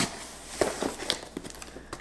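A cardboard shipping box being cut open with a small box cutter and handled: scattered scrapes, taps and clicks.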